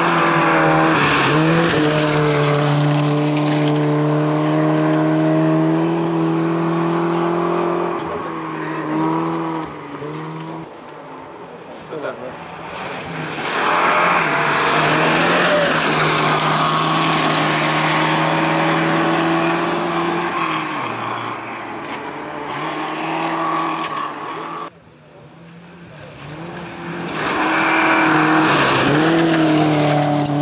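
Volvo rally cars, a 940-series saloon and a 240 coupé among them, passing one after another on a gravel stage: three loud passes of engines held at high revs, the pitch dipping and climbing again at gear changes, over a hiss of tyres and thrown gravel.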